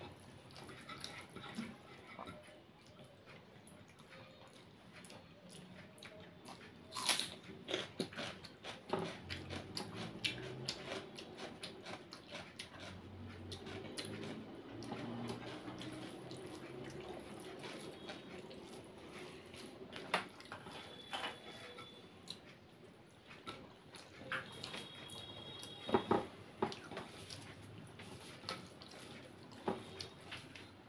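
Close-miked eating with the hands: fingers mixing and squeezing rice and curry on a plate, with chewing and many small wet clicks and smacks.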